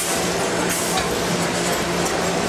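Horizontal packaging machine running as it wraps pipes in plastic film: a steady mechanical hiss with a low steady hum underneath, and a brief click about a second in.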